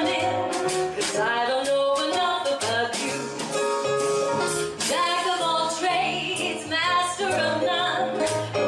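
A female jazz vocalist singing with a small jazz band, over a moving bass line and regular cymbal strokes.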